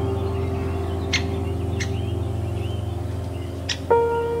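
Slow ambient background music of sustained chords, moving to a new chord near the end. Faint bird chirps sit under it, and three short sharp clicks come through.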